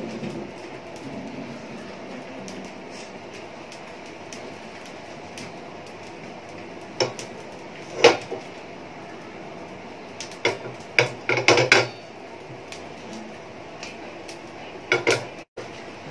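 Non-stick frying pan knocking and clattering against a gas stove's burner grate as it is moved, with a few single knocks in the middle, a quick cluster of them a little later and another pair near the end, over a steady hiss.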